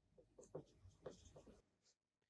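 Faint scratching of a felt-tip marker writing on a whiteboard, a run of short strokes.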